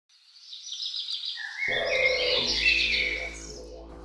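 Bird calls fading in, joined about a second and a half in by a low, steady drone with many overtones. Both die down toward the end.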